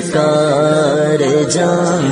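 A naat being sung: a voice draws out long, slightly wavering notes over a steady low sustained tone.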